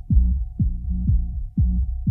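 Electronic dance music heard muffled, as if through a wall or dulled hearing: only the deep kick drum and bass come through, the kick thudding about twice a second over a steady low bass drone.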